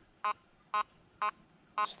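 Nokta Makro Simplex metal detector giving short, pitched target beeps, four in about two seconds, one for each pass as the coil is swung fast over a nickel test target.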